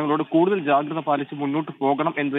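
Speech only: a newsreader reading a news item in Malayalam, talking without a break.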